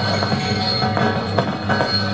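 Live band's experimental noise: a steady high squealing tone held over a low electronic hum, with a few sharp clicks scattered through.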